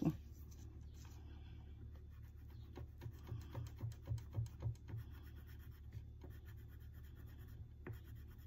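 A Crayola crayon coloring on a paper chart: faint scratchy back-and-forth strokes, with a run of about three strokes a second from about three to five seconds in.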